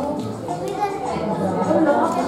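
Indistinct chatter of children and adults talking over one another.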